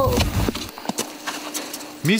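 Footsteps in snow: a few short, uneven steps.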